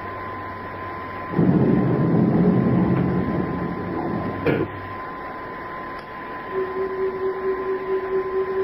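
Sci-fi radio-drama sound effects of a spaceship interior: a steady high electronic hum, joined just over a second in by a louder mechanical whirring that lasts about three seconds, then a lower steady tone that comes in near the end.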